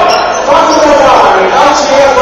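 Indistinct voices carrying in a gymnasium, with a basketball bouncing on the hardwood court.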